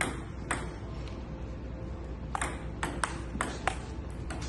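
Table tennis ball clicking off a Joola table and the players' paddles during a rally. Two hits come near the start, then a quicker run of about six hits in the second half.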